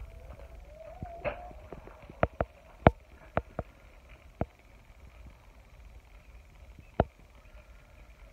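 Scattered sharp taps, about eight of them, most in the first half and the loudest about three seconds in, over a faint steady background noise.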